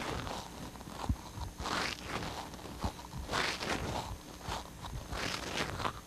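Faint rustling of clothing in soft swells about every second and a half, with a couple of light knocks.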